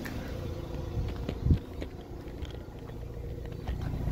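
A 2006 Mazda RX-8's 1.3-litre twin-rotor rotary engine idling with a low, steady hum. A single thump of the phone being handled sounds about a second and a half in.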